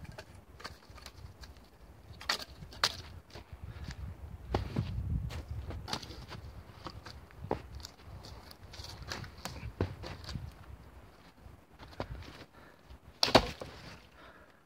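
Dry branches being snapped by hand, levered against a tree fork: irregular sharp cracks with rustling between them, the loudest crack near the end.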